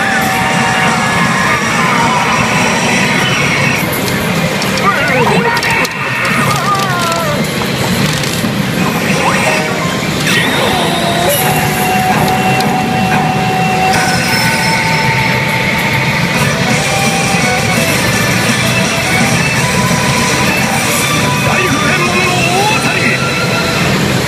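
CR Hana no Keiji pachinko machine's soundtrack playing loud and continuous: dramatic music, sound effects and recorded character voice lines during a reach presentation that ends in a jackpot.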